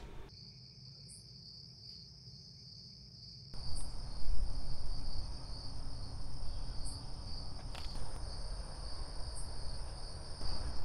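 Steady, continuous chirring of night insects such as crickets. About three and a half seconds in, a second higher insect trill and a louder low rumble of outdoor background noise join it.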